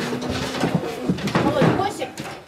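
Indistinct voices of several people talking, without clear words.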